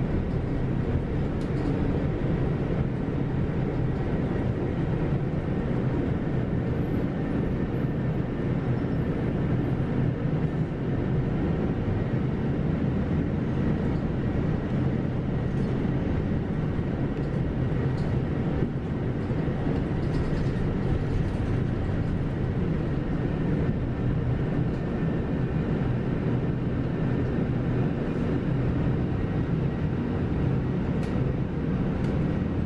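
Steady engine hum and road rumble inside a moving Kyoto City Bus.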